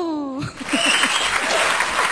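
A woman's last sung note slides down in pitch and ends about half a second in. The studio audience then applauds.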